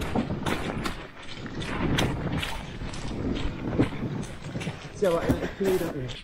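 A canoe being hauled on a portage cart over a muddy, rough forest track: footsteps with irregular knocks and rattles from the cart and hull. A voice comes in near the end.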